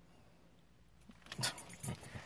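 Quiet car interior for about a second, then short rustles and knocks of a handheld phone being moved and turned around near the end.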